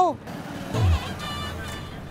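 Road traffic noise, with a motor vehicle passing about a second in, its low engine note falling in pitch.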